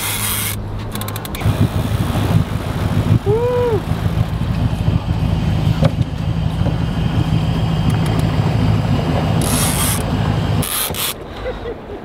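Fishing reel cranked hard against the heavy pull of a large sturgeon: a steady low whir with a fast rattle of the gears, stopping about ten and a half seconds in. A short vocal sound comes about three and a half seconds in.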